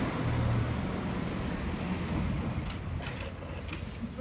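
A car engine's low rumble, fading away, with a few faint clicks in the second half.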